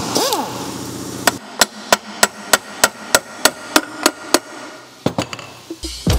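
A hand-held power wrench whirs briefly, its pitch rising then falling, on the bolts of a Mazda MX-5 rear differential housing. Then come about a dozen sharp, evenly spaced knocks on the metal, about three a second, and a few scattered knocks near the end.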